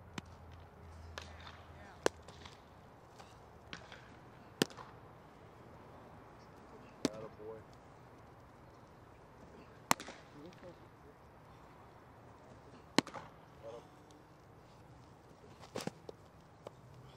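Baseballs popping into a catcher's leather mitt, six sharp pops a few seconds apart. Near the end a quick cluster of knocks as a ball is blocked in the dirt against the catcher's gear.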